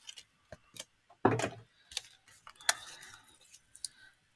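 Clear plastic cutting plates from a die-cutting machine being opened and handled: scattered light clicks, one louder knock about a second and a half in, and a short rustle of card near the three-second mark.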